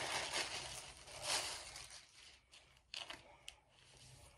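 Rustling and crinkling of record sleeves being handled as an LP is pulled out, loudest a little over a second in, then a few light clicks and taps near the end.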